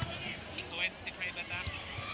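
Volleyball being served and played in an indoor arena: a sharp ball hit at the start and a few fainter ball contacts, over steady crowd noise.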